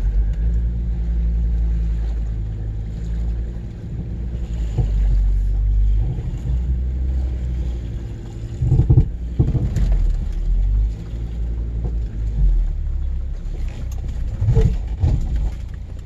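SUV engine running at low speed, heard from inside the cabin: a steady low rumble whose pitch steps up and down as the vehicle is manoeuvred, with a few brief louder sounds around the middle and near the end.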